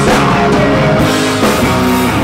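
Live rock band playing loudly on electric guitar, electric bass and drum kit.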